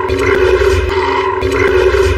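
Film soundtrack: a wolf spider, the many-eyed wolf-like creature of the animated film, growling over a held low note of dramatic score, with a few sharp clicks.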